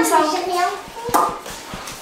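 People talking, a child's voice among them, with a single sharp short knock or clap about a second in.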